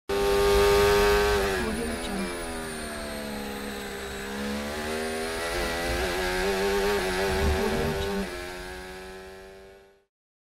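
Formula 1 engine at high revs under test. The note is held, sags as the revs fall away, climbs back up and is held again with small flutters. Just after 8 s the revs drop and the sound dies away over the last two seconds.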